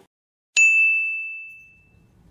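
A single high, clear bell-like ding, an intro sound effect, strikes about half a second in and rings out, fading away over about a second and a half.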